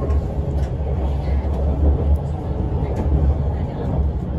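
Interior running noise of an electric limited express train moving along elevated track: a steady deep rumble from the running gear, with a few faint ticks.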